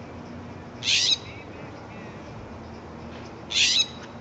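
Scrub jay screeching: two harsh, rasping calls, one about a second in and another near the end.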